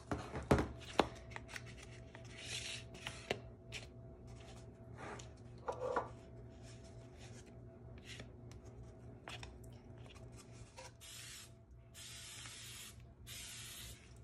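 Light clicks and rustles of hands handling an opened cardboard tube of refrigerated biscuit dough and dough on a plate, then several short hissing bursts of aerosol cooking spray in the last few seconds.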